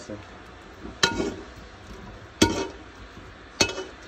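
Three metallic clinks, each with a short ring, spaced roughly a second and a quarter apart: a metal spoon knocking against the inside of a steel cooking pan as boiled meat chunks are scraped out of it.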